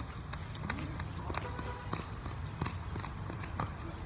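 Footsteps of two people running away across concrete: a string of quick, irregular steps.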